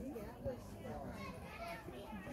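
Faint, indistinct voices of people, children among them, talking and calling.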